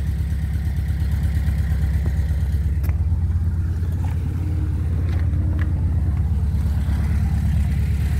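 1984 Volkswagen Transporter's 78 PS 1.9-litre water-cooled flat-four petrol engine idling steadily, with a few light clicks over it.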